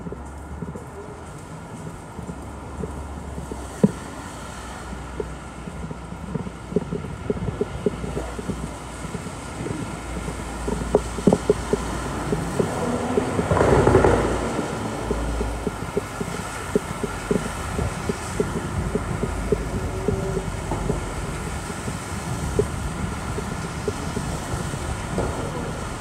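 City street ambience on a busy sidewalk: a steady low rumble of traffic, many pedestrians' footsteps clicking on paving stones, and one louder swell of noise about halfway through.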